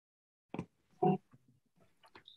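Silence, then a faint click and a short low grunt-like voice sound about a second in, from a participant's microphone on a video call.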